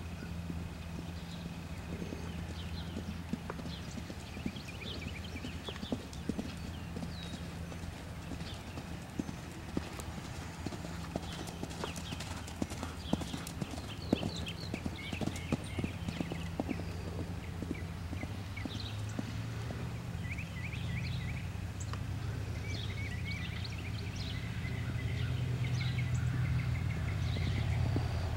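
Hoofbeats of a cantering pony with a rider on sandy arena footing, thickest through the middle, over a steady low hum.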